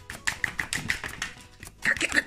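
Pokémon trading cards being flicked off a stack by hand one after another: a rapid run of light card snaps and slides, several a second, loudest near the end.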